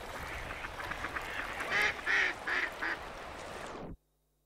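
A duck quacking four times in quick succession over a steady wash of water, all cut off abruptly just before the end.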